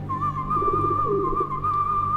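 A single long whistled note held with a slight waver over a low steady drone, from a film teaser's soundtrack.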